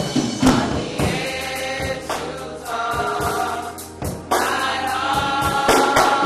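Gospel choir singing a sustained song, punctuated by sharp percussive hits every second or two.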